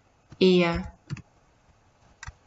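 A woman's voice briefly drawing out a sound that falls in pitch, followed by a few quick computer keyboard clicks as letters are typed.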